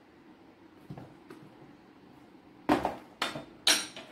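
Three sharp knocks and clinks of a metal spoon against containers on a wooden table, the last one ringing briefly, after two faint clicks about a second in.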